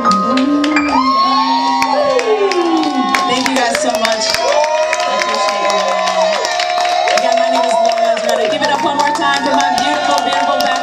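Live band with female lead and backing vocals singing long, sliding held notes over keyboard and guitar, with audience cheering and clapping.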